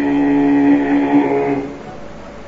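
A voice chanting holds one long steady note, which fades out about one and a half seconds in, leaving a faint steady hiss.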